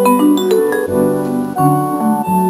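Instrumental intro of a hip-hop beat: held piano-like keyboard chords that change every second or so.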